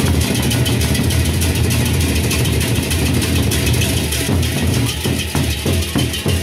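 A gendang beleq ensemble playing: large Sasak barrel drums beaten with sticks in a fast, dense rhythm, with a deep boom, under a continuous clash of hand cymbals.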